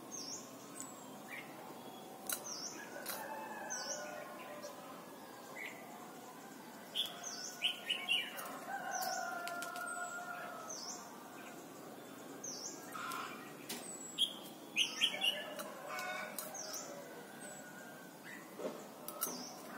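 Caged red-whiskered bulbul giving short, high chirping calls over and over, mixed with wing flutters and sharp ticks as it hops between perches.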